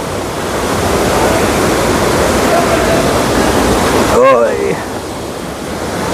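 Rapids of a fast-flowing river rushing over rocks: a loud, steady rush of water. A brief voice is heard about four seconds in.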